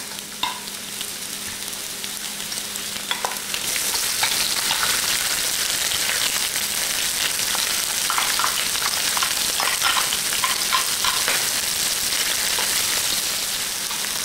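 Sliced carrot, onion and minced garlic frying in hot ginger-infused oil in an electric wok at high heat: a steady sizzle that grows louder about four seconds in as more vegetables go in, with scrapes and taps from a wooden spatula and a glass bowl.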